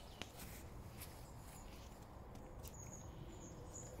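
Quiet woodland ambience: a few soft footsteps and light clicks on a muddy, leaf-littered path, with a faint high, thin bird call in the second half.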